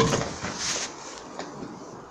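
Faint scuffing and rustling from a boy climbing over a low metal railing, with one light knock about one and a half seconds in.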